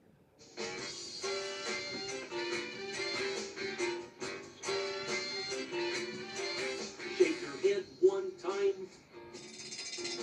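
A children's song's instrumental introduction plays from a television's speakers, starting about half a second in, with a steady beat and a bouncy melody. A shaker-like hiss joins near the end.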